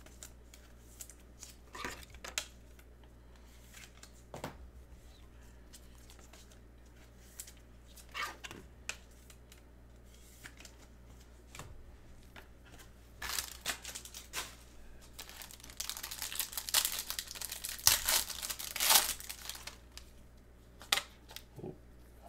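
Trading card pack being handled and its wrapper crinkled and torn open: scattered light rustles and clicks, then a few seconds of louder continuous crinkling late on.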